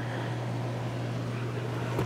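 A steady low hum under an even background hiss, with no distinct events.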